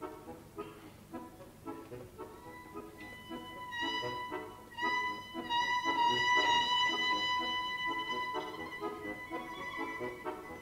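Bayan (button accordion) playing a pulsing chord accompaniment, about two chords a second, joined about two seconds in by a violin holding long sustained notes above it, growing louder in the middle.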